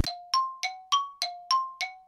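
A short chime jingle of bright struck, bell-like notes, about three a second, alternating between a lower and a higher pitch. Each note rings and dies away quickly, seven in all.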